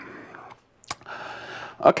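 A single sharp click about a second in, with faint breathy noise before and after it, then a man's voice starting to speak near the end.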